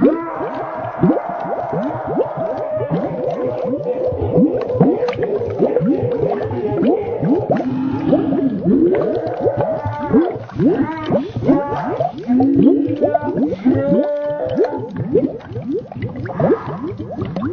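A boy's screaming slowed far down, turned into long, wavering, moaning tones with many falling sweeps in pitch.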